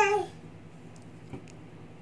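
A baby's drawn-out, high-pitched 'aah' note in its attempt at singing, the pitch rising and falling, cutting off just after the start. Then near-quiet room noise with one faint knock about a second and a half in.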